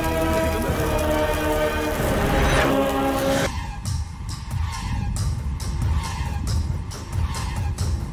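Horror film soundtrack music: sustained tones that cut off abruptly about three and a half seconds in, giving way to a thinner, hollow pulse of regular beats, about three a second.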